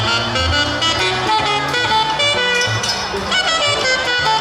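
Live jazz: a saxophone plays a melodic line of held and moving notes over an electric guitar, with low notes underneath.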